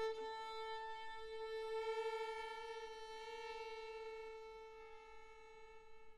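Live concert music from a violin concerto: one long, soft held note that wavers slightly and fades away near the end.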